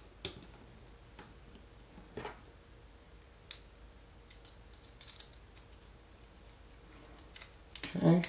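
Faint, scattered clicks and light knocks of small plastic and metal suspension parts from a Tamiya TA02S kit being handled and fitted together, with a screwdriver turning a screw into the hub assembly; a quick run of small ticks comes about halfway through.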